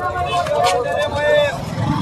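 Background voices of people talking over the low, pulsing rumble of a car engine running at idle, which grows louder near the end.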